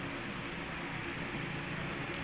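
Steady low background noise with a faint hum: room tone.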